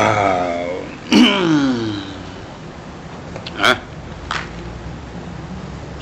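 A person's wordless voice: two drawn-out sounds in the first two seconds, each falling in pitch, then two short breathy noises a little past the middle. A steady low hum lies underneath.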